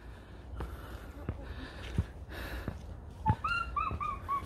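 A wild mountain bird calling in the trees: a quick run of short, clear whistled notes starts about three seconds in, with a few soft knocks before it.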